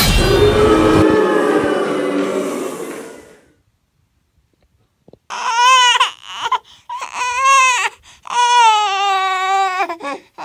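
Dramatic music fading out over the first three seconds or so. After a short silence, a high wailing cry comes in several long, wavering stretches.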